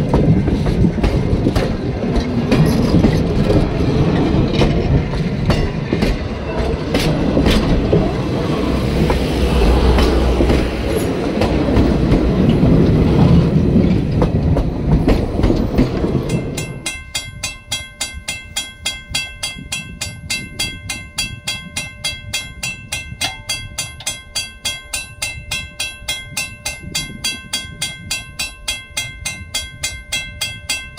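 Passenger coaches rolling past at close range, their steel wheels clattering and rumbling over the rail joints and the crossing. About 16 seconds in this gives way to a railroad crossing bell ringing in quick, evenly spaced strokes.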